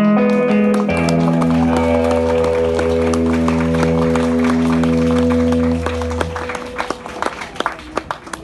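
A song's final chord held on electric guitar over a deep bass note, ringing for about five seconds and then fading out. Scattered hand claps sound through it.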